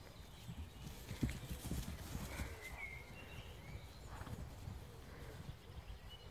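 Horses' hooves thudding irregularly on paddock grass as the horses move about, the loudest thud about a second in.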